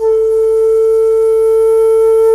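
Solo shakuhachi bamboo flute holding one long, steady note, which begins just at the start after a brief breath break.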